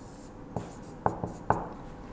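Marker writing on a whiteboard: soft rubbing strokes with a few sharp taps as the tip touches down, about three in two seconds.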